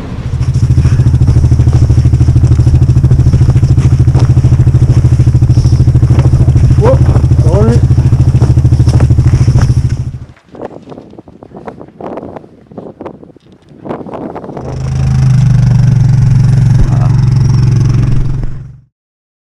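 Small boat's outboard motor running loudly and steadily at speed, cutting off about ten seconds in. A few seconds of quieter crackle and clatter follow, then a motor running loudly again near the end.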